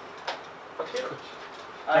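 A pause in a man's talk: quiet room tone with a few faint brief clicks and a short faint sound about a second in, then he starts speaking again at the very end.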